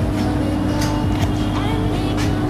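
Dipinsure phone nano-coating machine running with a steady motor hum, under background music.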